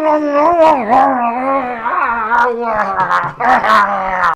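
A man's long wordless vocalizing, high and wavering in pitch, held for long stretches with only a few short breaks.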